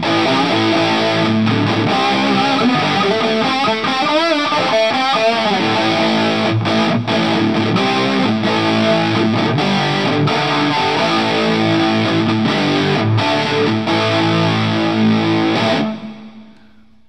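Electric guitar played through an Orange Micro Terror 20-watt amp head with a valve preamp into a 4x12 speaker cabinet: continuous overdriven chords and riffs with a bit of valve sound. Wavering bent notes come about four seconds in.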